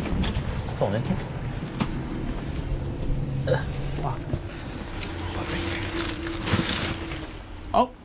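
A door being opened and walked through, with a few scattered knocks and clicks from door hardware and footsteps, and rustling of a jacket and packages over a steady background rumble.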